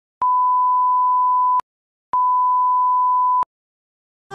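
A steady electronic beep at a single pitch, sounding twice for about a second and a half each with a half-second gap, with no music under it.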